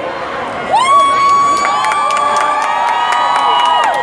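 Rally crowd shouting and cheering in response, several voices holding long high calls together for about three seconds before they trail off.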